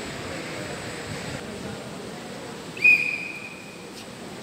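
A single whistle blast, about a second long, near the end: one steady high tone that starts sharply and fades, over the low background noise of the hall. It is the official's signal for the competitor to begin his form.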